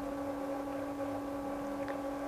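A faint, steady hum: one low tone with a few fainter higher overtones over a light background hiss.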